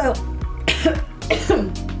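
A woman coughing, twice, over steady background music.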